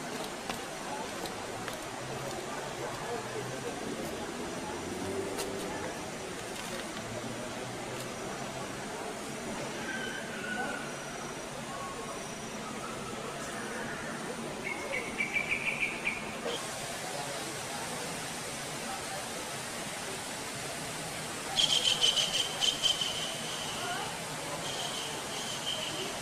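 Outdoor garden ambience with a steady hiss and faint distant voices. A short burst of rapid trilling calls comes about 15 s in, and a louder trill about 22 s in that fades into a thin, steady high note near the end.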